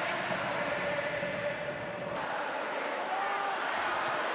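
Steady crowd noise from football supporters in a stadium, with faint chanting carried in it. A short click about halfway through.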